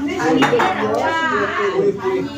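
Dishes and cutlery clinking, with several voices talking in the background.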